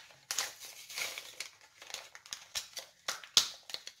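Packaging of a glass paint marker being handled and opened: irregular crinkling and crackling with sharp clicks, the loudest about three and a half seconds in.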